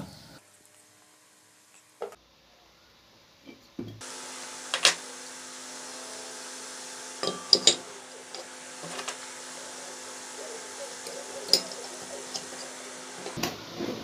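Metal clicks and knocks of a bearing puller being fitted over a ceiling fan's bearing and turned to draw the jammed bearing out of its housing, a few sharp ones scattered through. A steady low hum comes in about four seconds in.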